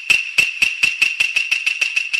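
Rapid, even jingling percussion, about eight strikes a second over a steady high ring, played as a sound cue in the TV show's audio.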